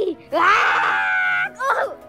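A character voice for a plush puppet lets out one high-pitched, drawn-out scream lasting a little over a second. A short yelp follows near the end.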